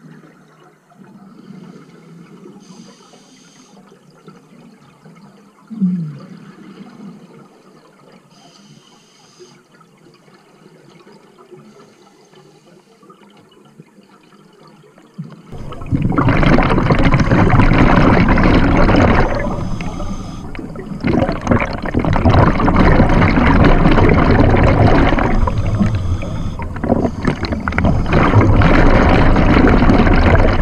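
Underwater sound of scuba diving. Faint water noise for the first half, with one short low thump about six seconds in. From about halfway, a loud rush of scuba regulator exhaust bubbles close to the camera, easing off briefly twice.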